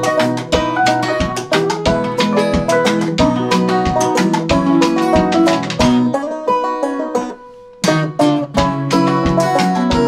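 Acoustic blues band playing an instrumental passage: guitars and banjo picked over a steady percussive beat, with no singing. A little after six seconds the band drops out almost to nothing, then comes back in together about two seconds later.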